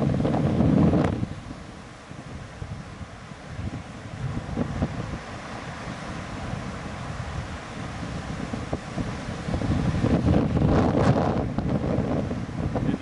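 Wind buffeting the microphone over lake surf breaking on a sandy beach, with heavy gusts in the first second and again near the end.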